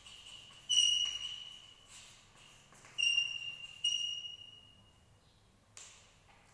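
Chalk squeaking on a blackboard while writing: three high, steady squeals, each starting sharply and fading over about a second, with a short tap of the chalk near the end.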